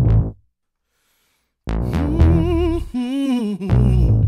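Pop song intro. Short, loud stabs of chord and drum-machine hits are separated by moments of complete silence. Between the stabs a singer holds a wordless note with wide vibrato over the backing for about two seconds.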